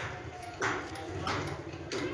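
A steel trowel scraping wet cement mortar across a clay tile: two short scrapes, then a light tap of the trowel near the end.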